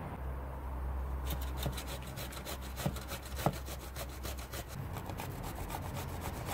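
Peeled zucchini being grated on a metal box grater: quick, even rasping strokes, about seven a second, starting about a second in.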